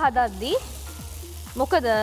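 Hopper (appa) batter sizzling as it is poured into a hot hopper pan and swirled round. A sung vocal line from background music sits over it, loudest at the start and again near the end.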